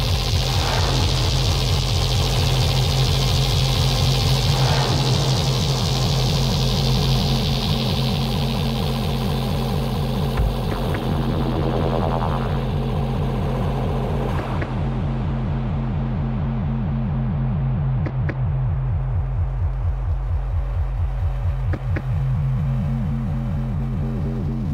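Dark techno DJ mix starting up: a fast, steady low pulse, with a hissing noise sweep that falls in pitch and cuts off about fourteen seconds in.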